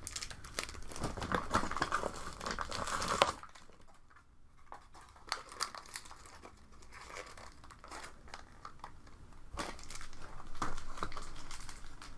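Thin plastic bag of Nerf Rival foam balls crinkling as it is handled: busy for the first three seconds, then quieter, scattered crackles, picking up again near the end.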